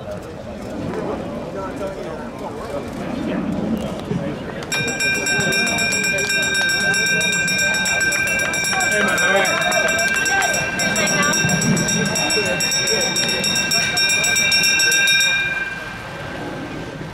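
A hand bell rung rapidly and without a break for about ten seconds, starting about five seconds in. It is the lap bell at trackside, signalling the last lap of the race. Voices of people at the trackside go on underneath.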